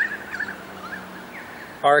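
A bird calling: a falling note, then a run of quick, high, warbling chirps lasting about a second and a half.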